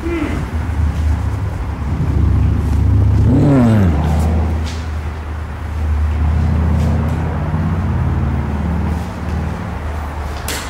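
A motor vehicle's engine running with a low, steady rumble, its note falling sharply a little past three seconds in and settling again toward the end.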